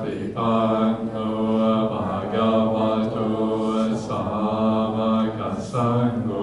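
Theravada Buddhist devotional chanting in a near-monotone. The voices hold steady on one pitch in phrases of about two seconds, with short breaks between them.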